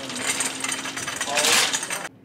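Empty wire shopping cart rattling and clattering as it is pushed along on its casters, a dense continuous clatter.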